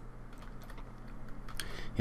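Faint clicks of a computer mouse and keyboard as edges are selected on screen, a few at first and more in quick succession near the end, over a steady low hum.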